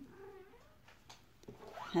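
Domestic cat meowing faintly.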